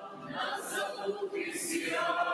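A choir and large congregation singing a hymn together, many voices at once. A line begins just after a brief dip, with the hiss of the singers' sibilants about half a second in and again near the end.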